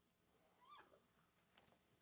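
Near silence: room tone, with one faint, short, wavering squeak a little under a second in.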